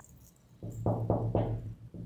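Knuckles knocking on a wooden door, a quick run of about five hollow knocks starting about half a second in.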